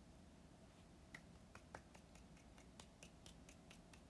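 Near silence: room tone with a dozen or so faint, irregular clicks.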